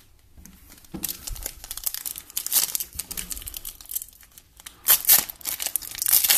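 Foil wrapper of a Select football trading-card pack crinkling and tearing as it is handled and opened. It starts about a second in, with louder crackles near the middle and just before the end.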